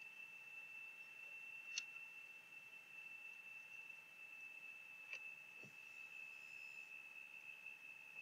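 Near silence: faint room tone of a recording microphone with a thin steady high-pitched whine, broken by two faint short clicks.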